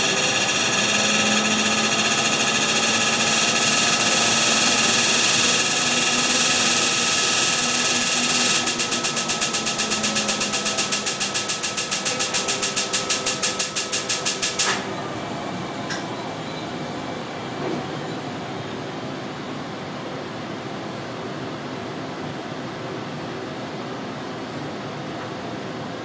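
Excimer laser firing during surface ablation of the cornea: a loud, steady rapid buzz, then pulsing about four times a second for some six seconds, cutting off sharply about fifteen seconds in. Afterwards only a quieter steady equipment hum remains.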